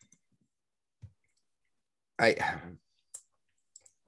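Mostly dead silence, broken by a brief low thump about a second in, a man's short spoken "I" a little after two seconds, then a sharp click and two tiny ticks near the end.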